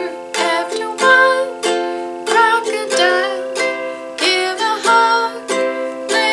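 Ukulele strummed in chords, about one to two strums a second, with a woman's voice singing along.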